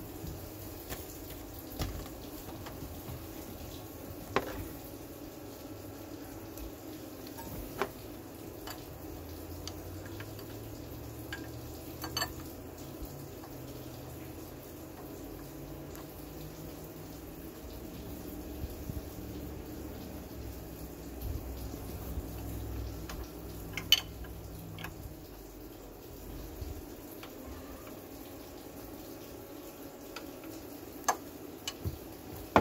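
Steady running water hissing throughout. A few sharp clicks and knocks of hands and tools on the engine come over it, the loudest about three quarters of the way through.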